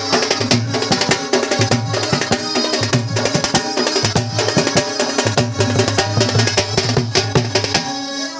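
Loud dance music driven by fast drumming, dense rapid strokes over a steady low bass note: Odia Danda Nacha folk music.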